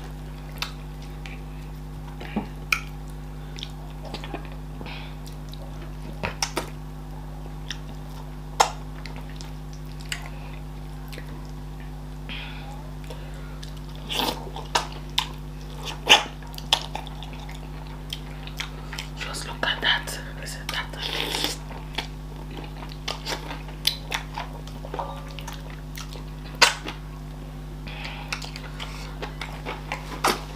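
Close-up mouth sounds of eating fufu, okra soup and chicken by hand: scattered wet lip smacks and chewing clicks, busiest in the middle, over a steady low hum.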